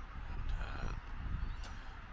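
Wind buffeting the microphone in an uneven low rumble, with faint calls of gulls.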